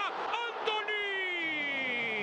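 Spanish-language football commentator's voice: a few quick syllables, then one long drawn-out shout held for over a second, its pitch slowly falling.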